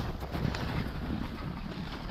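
Wind buffeting the microphone: a steady low rumble and rush.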